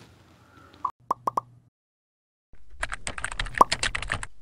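End-card sound effects: four quick pops about a second in, then, after a short silence, a fast run of keyboard-typing clicks.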